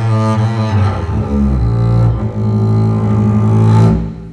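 Schnitzer double bass with gut strings, bowed (arco): a slow solo line of sustained low notes, changing pitch a few times, the last note growing louder.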